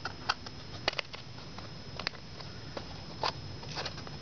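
Scattered sharp clicks, about a dozen at irregular intervals, over a steady low room hum and a faint, thin high whine.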